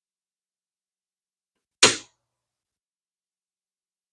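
Metal frame of an Abu Garcia Ambassadeur 5000 baitcasting reel set down on the parts tray: one sharp knock about two seconds in, dying away quickly.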